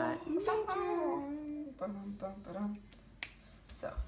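Talking, then two sharp clicks about half a second apart near the end.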